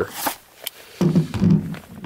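A short scrape and a light click as a leather-holstered pistol is lifted, moved and set down on a truck tailgate with gloved hands, followed by a man's voice for the last second.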